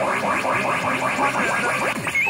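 Pachinko machine's electronic sound effects during a reach on a pair of 6s: a busy jingle with a quick run of short rising chirps, about four a second.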